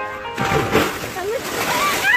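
Something large splashing into creek water, with voices shouting over it.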